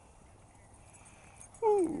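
Faint outdoor background, then near the end a single loud dog bark or yelp that slides down in pitch, from dogs playing and chasing.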